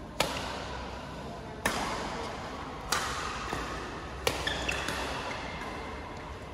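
Badminton rackets striking a shuttlecock in a rally: four sharp hits about a second and a quarter apart, each echoing in a large indoor hall.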